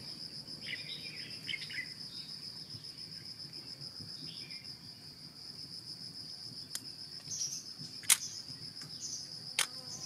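Steady, high-pitched insect trill in a rapid even pulse, with a few brief chirps near the start and three sharp clicks in the second half, the loudest about eight seconds in.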